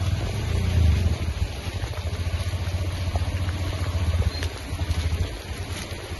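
Wind buffeting the microphone outdoors in rainy weather: a low, fluttering rumble that eases near the end.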